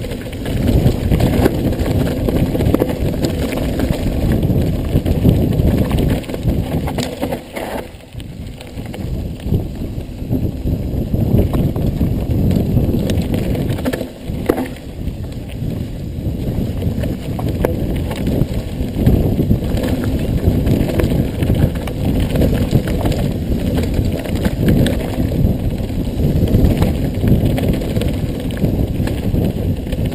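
Mountain bike descending a rough dirt and gravel trail: steady tyre rumble with constant rattling and knocking from the bike over the bumps, easing off briefly twice.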